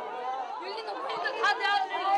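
A grieving mother wailing and crying out '다 내 아들이야' ('they're all my sons') in a high, breaking voice, with other voices around her; her cries get louder near the end.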